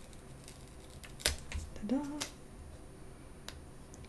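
Paper sticker being peeled off a planner page: a sharp tick about a second in and another about two seconds in, with faint small paper ticks. A brief hum of voice comes between the two ticks.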